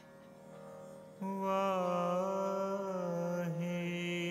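A harmonium holds a faint chord. About a second in, a male voice enters with a long held note that wavers in pitch, sung over the harmonium in a Sikh kirtan invocation.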